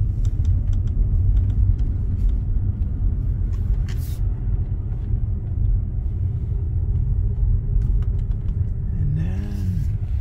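Steady low road and tyre rumble inside the cabin of a Tesla electric car driving slowly, with a brief click about four seconds in.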